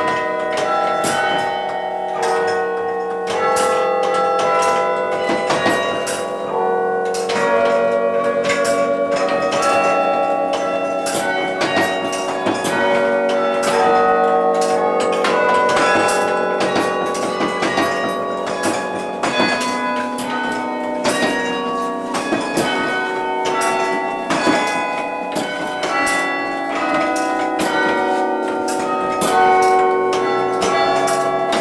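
A 23-bell carillon played from its wooden baton keyboard, heard close up inside the bell tower: a continuous tune of struck bell notes. Each note starts with a sharp strike, and the notes ring on and overlap one another.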